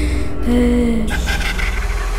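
Eerie horror film score over a deep, steady drone: wavering, moan-like held tones, then a hissing swell about a second in as the scare cuts in.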